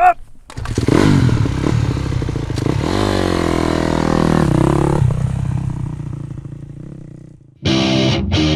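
Honda motocross bike engine running loud from about half a second in, revving so its pitch dips and climbs, then fading away toward the end as the bike moves off.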